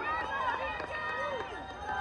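A crowd talking and calling out, many voices overlapping, as cheering dies down.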